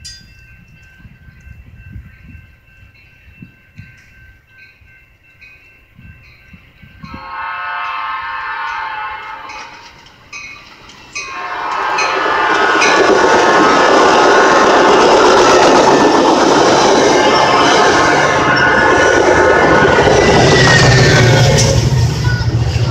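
Metra commuter train sounding its horn as it approaches, with a long blast starting about seven seconds in and a second from about eleven seconds. Then the train passes close at speed, its wheels clattering over the rails, loud to the end.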